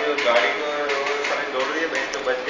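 Speech: a voice talking in Hindi, with no other clear sound standing out.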